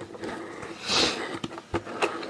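A short, sharp sniff about a second in, with a light knock of hands on the skateboard wheel and truck near the end, as the wheel is spun by hand.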